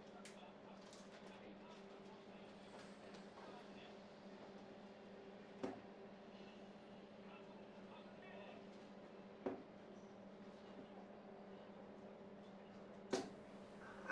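Three steel-tip darts striking a bristle dartboard one after another, three short sharp knocks about four seconds apart, over a low steady hum.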